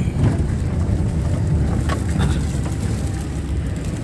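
A car being driven, heard from inside the cabin: a steady low engine and road rumble, with a couple of light clicks about halfway through.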